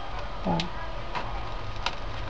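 A hot glue gun's trigger mechanism giving a few light clicks, about three, spaced roughly half a second apart, as glue is squeezed out onto the acetate.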